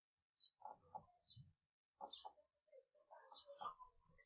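Near silence: quiet room tone with a few faint, short high chirps scattered through it.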